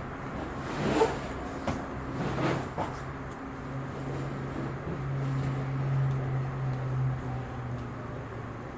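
Inflated Sea Eagle kayak's vinyl hull rubbing and creaking under a person climbing in and sitting down, in a few short scrapes over the first three seconds. A low steady hum rises about halfway through and runs until near the end.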